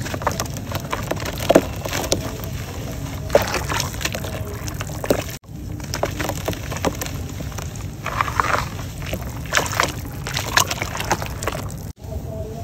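Chunks of dried mud crumbled by hand over a bowl of muddy water: crisp cracking and crunching of the breaking clumps, with wet sloshing and pieces splashing into the water. The sound breaks off briefly about halfway through at an edit.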